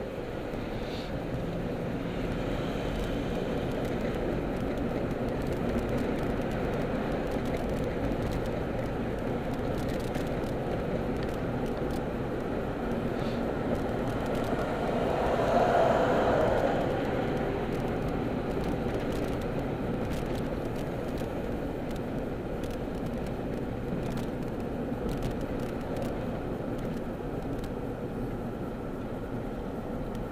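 Steady road and engine noise heard inside a moving car's cabin, with a swell of louder noise for about two seconds halfway through.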